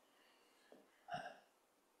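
Near silence in a pause, broken about a second in by one short gulp-like throat sound from a man, with a fainter sound just before it.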